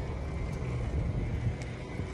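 A steady low rumble with no clear speech.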